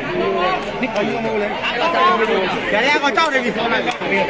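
Crowd of spectators chattering, many voices talking over one another.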